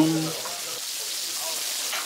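Beef intestines (gopchang and daechang), onions and potatoes sizzling steadily in a hot tabletop pan.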